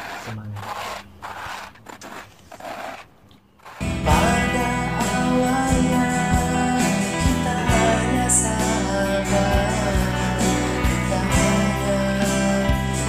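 A few short noisy bursts, then guitar music with singing starts loudly about four seconds in and carries on steadily.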